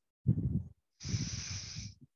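A woman breathing out hard as she rocks back and forth on her spine on a yoga mat: a short low sound, then a hissing exhale lasting about a second.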